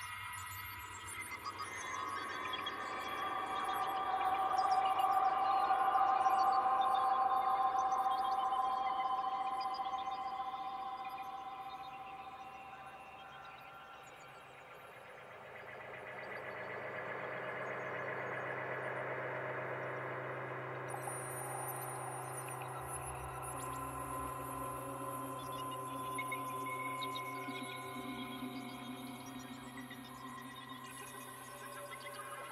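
Ambient electronic music: long held synthesizer tones that swell to a peak about six seconds in and fade around fourteen seconds, then give way to a new layer of held tones.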